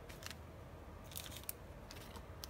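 Faint handling noises as a watch box and its small accessories are picked up and put in: light rustling and a few soft clicks, with one sharper click about one and a half seconds in.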